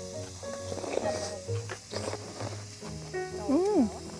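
Soft background music with long held notes, under faint eating sounds. Near the end a woman gives a drawn-out 'mmm' that rises and falls in pitch.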